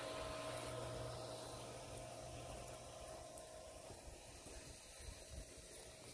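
Pool equipment running: a steady electric motor hum from the pool pump, slowly fading as the distance grows.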